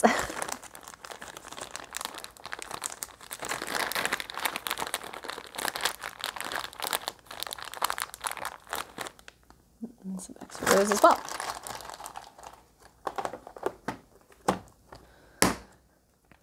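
Plastic packaging crinkling and rustling as hands rummage through bulk safety eyes, steady for about nine seconds. Then a short laugh-like vocal sound and a few sharp plastic clicks near the end.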